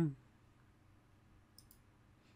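Two quick computer mouse clicks about a second and a half in, over faint room tone, just after the end of a spoken word.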